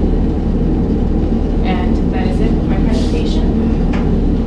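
A steady low rumble of background room noise, with a few brief murmured words about two and three seconds in and a single click just before the end.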